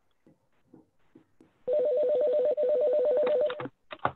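Electronic telephone ringing: a fast two-tone warbling trill lasting about two seconds, starting a little before halfway through. Faint clicks come before it, and a knock comes right at the end.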